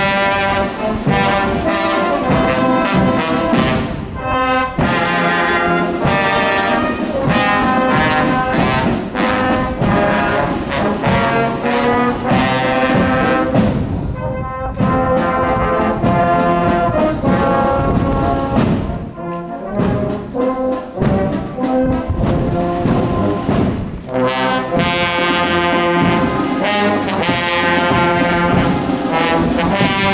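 Youth brass band playing as it marches, with trombones and tubas among the brass, sustained chords and a melody carrying on with only brief breaks between phrases.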